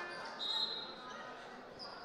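Faint sports-hall ambience during a handball match: low crowd and court noise, with a thin, steady high-pitched tone lasting under a second, beginning about half a second in.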